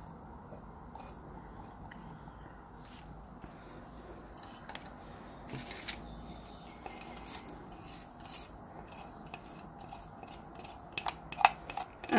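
Faint handling sounds of paint cups on a tabletop: soft rubbing and light scraping, with a few sharper little clicks near the end.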